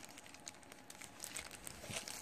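Faint crinkling of a plastic bubble mailer handled in the fingers, with small scattered crackles.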